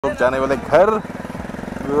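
A motorcycle engine idling steadily, with voices talking over it during the first second.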